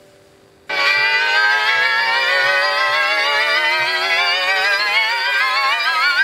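Squier Telecaster's electric guitar strings sounding through the pickups as a neodymium rod magnet is held over them. A sustained note comes in suddenly under a second in and slowly rises in pitch, like a theremin, and starts to waver near the end.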